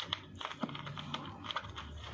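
Kitchen knife cutting soft, ripe fruit flesh on a plastic cutting board: a run of irregular light clicks and taps as the blade strikes the board, several a second.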